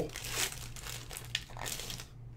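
Foil trading-card pack wrapper crinkling in the hands as it is torn open and the cards are pulled out, in several short rustles.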